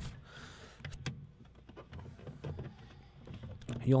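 Hard plastic clicking and knocking as a refrigerator's interior plastic cover panel is gripped and worked by hand to free it from its clips. A couple of sharper clicks stand out, one near the start and one about a second in.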